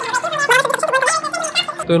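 Speech over quiet background music, with an abrupt cut near the end to a man speaking.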